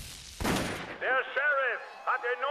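A single sharp impact hit about half a second in, dying away quickly. From about a second in, a man's voice shouting through a megaphone follows; it sounds thin and narrow.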